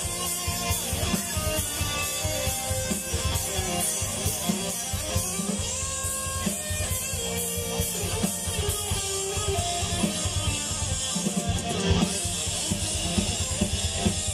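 Metal band playing live through a festival PA: an instrumental passage of distorted electric guitars over a fast, dense drum kit beat, with no vocals.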